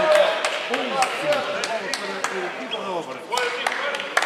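Several voices calling out in an echoing sports hall, with sharp knocks about three times a second, typical of a basketball being dribbled up the court.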